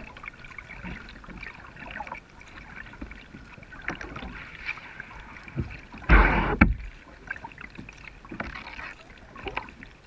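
Kayak paddling on a calm river: water trickling and dripping off the paddle, with small splashes from the strokes. About six seconds in comes one louder splash or knock, lasting about half a second.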